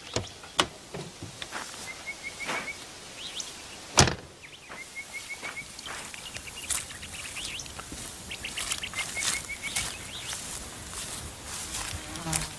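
Bush ambience with a bird repeating a short run of about five quick, even chirps, four times over, among faint scattered rustles and ticks. A single sharp thump stands out about four seconds in.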